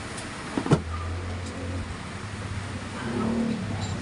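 A single sharp click of a small metal part or tool set down on the workbench about three-quarters of a second in, over a low motor hum that rises again near the end.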